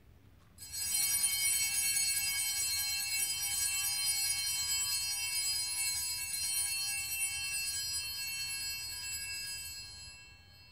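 Altar bells rung continuously for about nine seconds at the elevation of the consecrated host, a bright high jingling that starts about half a second in and stops near the end.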